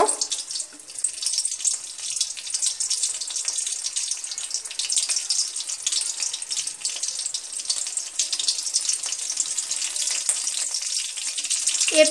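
Black cumin (kalo jeera, nigella) seeds sizzling in hot mustard oil in a pan: a steady sizzle with fine crackles throughout.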